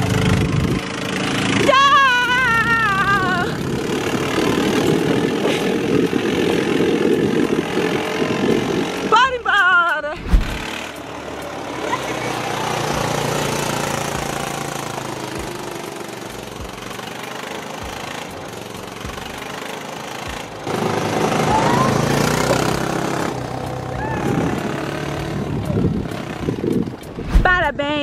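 Small engine of a mini Beetle replica car running as it drives along, with wind on the microphone. Brief voices call out about two seconds in and again about nine seconds in.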